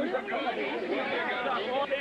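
Crowd chatter: many voices talking at once and overlapping, with no clear words.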